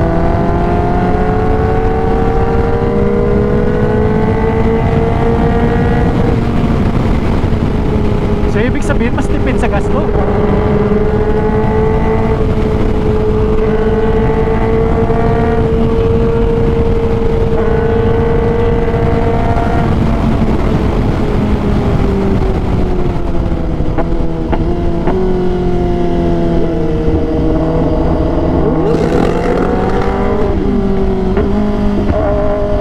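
Kawasaki ZX-10R inline-four engine at highway speed, heard from the rider's seat with heavy wind noise. Its pitch climbs slightly for the first few seconds, then holds steady in sixth gear. Around twenty seconds in the pitch falls away as the bike slows, and near the end it rises and falls again through downshifts to third gear.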